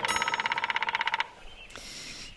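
A segment jingle ends with a rapid ringing rattle of about twenty strikes a second, lasting just over a second and then stopping, followed by a brief high hiss.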